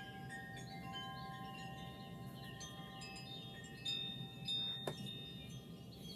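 Chimes ringing softly: several clear, long-lingering tones at different pitches, struck at irregular moments and overlapping. A single sharp click sounds about five seconds in.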